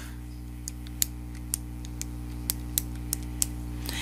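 Light, irregular clicks of keys being tapped, about a dozen, as a subtraction (1 minus .8869) is keyed in to get a result, over a steady low electrical hum.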